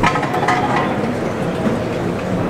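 Steady shuffling scrape of the costaleros' feet dragging over the pavement as they carry the heavy paso forward, over the murmur of a packed crowd, with a few light clicks near the start.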